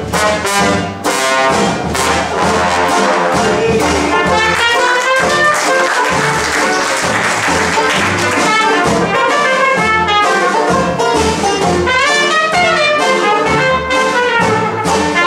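Traditional New Orleans jazz band playing an instrumental passage: trumpet and trombone lead over tenor banjo, double bass and drums.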